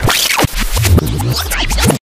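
Loud music sting of DJ-style record scratching over a heavy bass beat, with quick rising and falling sweeps. It starts and stops abruptly, with a brief break about half a second in.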